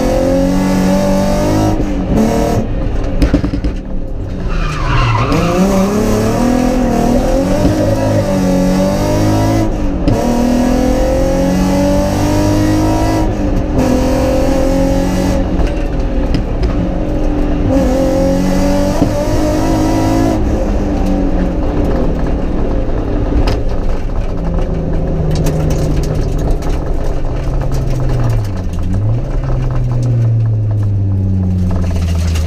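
Rally car engine heard from inside the cabin under hard driving, its pitch repeatedly climbing and dropping sharply at each gear change, with a short high squeal about four seconds in. From about two-thirds of the way through the engine runs at lower, steadier revs.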